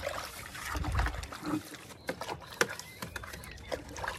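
Stiff brush scrubbing the inside of plastic flower buckets, with irregular scraping and several sharp knocks of the buckets being handled. The sharpest knock comes about two and a half seconds in.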